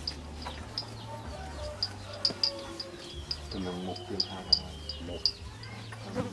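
Outdoor ambience of short, high chirps repeating a few times a second over a steady low hum, with a brief voice about halfway through.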